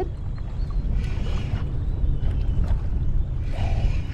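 Steady low wind rumble on the microphone, with faint sounds of a spinning reel being wound as a hooked flathead is played in.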